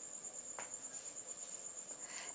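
Faint, steady, high-pitched trilling of insects in the evening.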